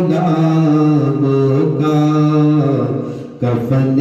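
A single voice chanting a melodic devotional recitation in long held notes, with a short breath about three seconds in.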